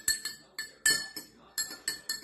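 Metal spoon stirring water in a clear drinking glass, knocking against the glass in several irregular clinks that each ring briefly.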